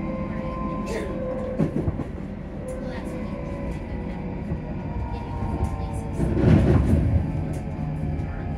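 Inside a ScotRail Class 334 electric multiple unit under way: steady running noise with the whine of the traction equipment, a few light clicks, and a louder rumble about six seconds in.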